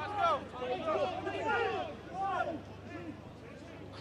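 Several men's voices talking and calling over one another, with a low steady hum underneath.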